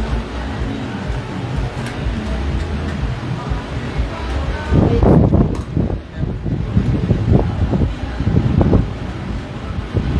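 Music and indistinct voices over a low rumble, growing louder and more uneven in the second half.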